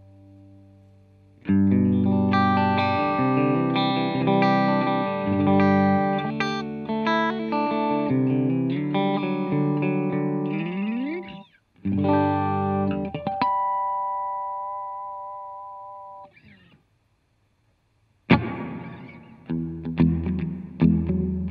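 Electric guitar played through a Boss ME-80 multi-effects processor on a Fender-style amp model: strummed chords and a run with a rising bend, a brief break, more chords, then a note left ringing out and fading away before playing starts again near the end.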